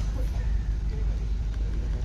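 Street traffic noise with a steady low rumble of vehicle engines.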